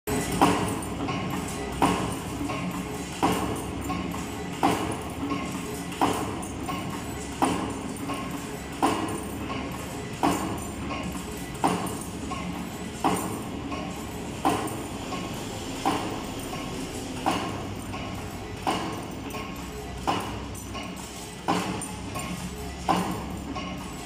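Automatic wire forming machine running, feeding steel wire through straightening rollers and bending it into square rings, with a sharp metallic clack about every 1.4 seconds, once per forming cycle, over a steady motor hum.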